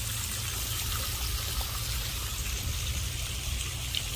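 Steady rushing background noise with a low rumble underneath, and no distinct events.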